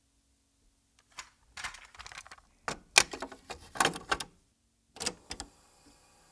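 Hard plastic clicks and clatter as a cassette tape is handled out of its case and loaded into a portable cassette player, several sharp clicks a second apart, the last ones as the START button is pressed. Faint tape hiss begins near the end as playback starts.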